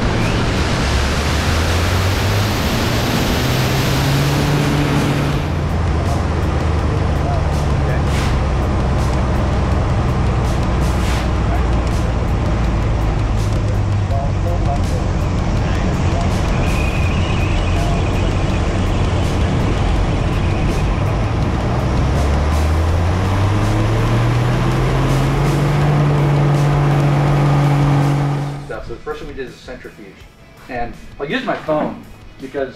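Pitts Special biplane's piston engine and propeller running under a heavy rush of airflow during aerobatic manoeuvres. The engine pitch rises twice, near the start and again about three-quarters of the way in, as power comes up. The sound cuts off abruptly just before the end.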